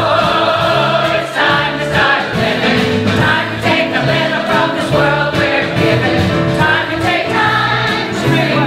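An audience singing a chorus along with the lead singer, many voices together. Piano, bass and drums accompany them.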